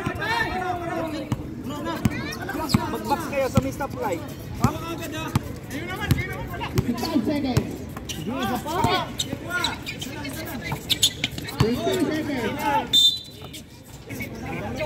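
A basketball dribbled and bouncing on an outdoor court, a sharp knock roughly once a second, among the calls and chatter of players and spectators.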